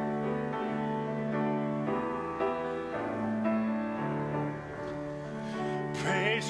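Grand piano playing the introduction to a congregational hymn, held chords changing every second or so.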